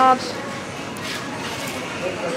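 Steady supermarket background noise with light rustling as a bunch of spring onions is picked up from a wooden crate. A spoken word ends at the very start.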